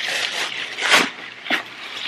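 Tissue paper and bubble wrap rustling and crinkling as a package is unwrapped by hand, with two sharper crackles about a second and a second and a half in.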